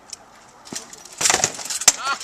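Rattan swords striking shields and armour in a quick exchange: a single sharp crack a little under a second in, a clattering flurry around the middle, and the loudest, sharpest crack near the end.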